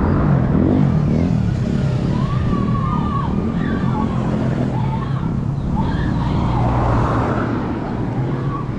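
A motor vehicle engine running nearby: a steady low hum and rumble throughout, with faint pitched sounds rising and falling in the middle.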